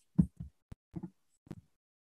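A handful of short, low thumps and one sharp click within about a second and a half, then silence.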